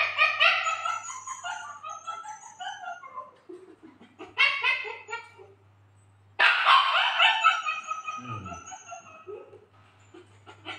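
Animal calls in three loud bouts, the last one long and drawn out, over a faint steady low hum.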